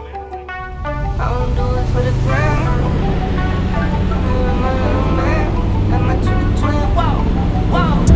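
Background music over a car engine running on the track; the engine comes in about a second in and its pitch slowly climbs toward the end as it revs up.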